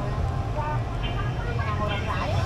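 Shuttle bus engine idling at a stop, a steady low rumble, with people talking in the background.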